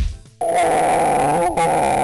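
A crunching hit as a wooden door is smashed in, then, after a brief gap, a loud sustained sound effect with a wavering pitch lasting almost two seconds.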